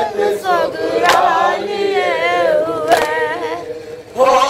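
Men's voices reciting a nauha, an Urdu lament, together without instruments, in a slow, wavering melody. Two sharp strikes cut through, about a second in and near three seconds. The voices drop away just before the end.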